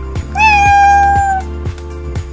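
A single cat meow, about a second long: a short upward bend, then held and sinking slowly in pitch, over background music with a steady beat.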